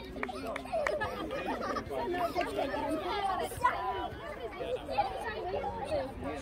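Several people talking and calling out at once, overlapping and unintelligible: spectators and players' voices around a football pitch.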